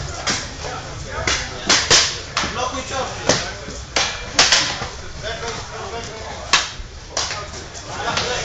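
Eskrima sticks striking during sparring exchanges: about ten sharp cracks, some in quick doubles, with a lull in the middle before two more strikes near the end.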